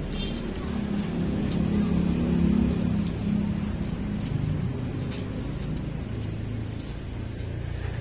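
A motor vehicle's engine running close by, swelling to its loudest about two seconds in and then settling to a lower, steadier hum. Faint crisp ticks of paper banknotes being leafed through by hand are heard over it.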